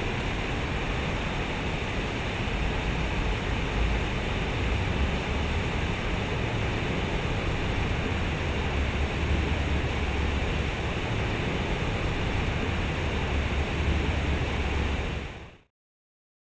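Water from a large outdoor fountain pouring and splashing into its pool, a steady rush with a low rumble underneath, cutting off suddenly near the end.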